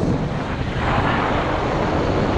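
Electric go-kart driving, heard from the driver's seat: a steady rushing noise of motor, tyres and air, brighter from about a second in.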